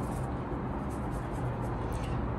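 Steady low background hum and hiss with no distinct events.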